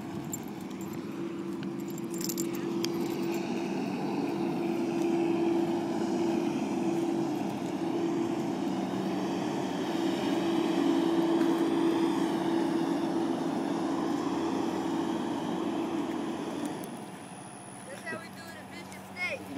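Semi truck's diesel engine running at a steady pitch as the tractor-trailer manoeuvres on the dirt lot, growing louder through the middle and dropping away shortly before the end.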